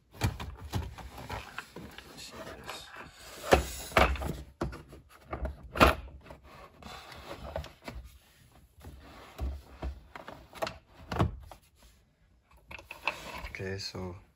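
The hard plastic center console trim of a 1999 Mazda Miata NB being worked back into place: irregular knocks, clicks and rubbing of plastic against plastic. The sharpest knocks come about four and six seconds in, and two more near eleven seconds.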